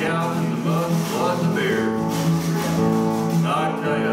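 Acoustic guitar strummed in a steady country rhythm, with a man singing over it.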